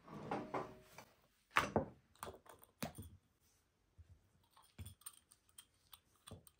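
Dishes and cookware being handled: a string of light knocks and clicks, the loudest about one and a half seconds in.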